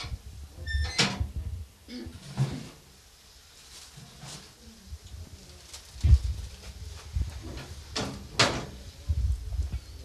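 An oven door opening and a metal baking tray being taken out and set down: a few sharp knocks and clanks, the loudest two close together near the end.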